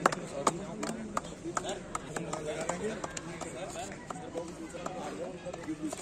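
Scattered, irregular hand claps over unworded background chatter from a small group of people.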